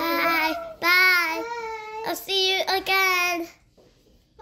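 A child singing in long held, high notes, stopping about three and a half seconds in.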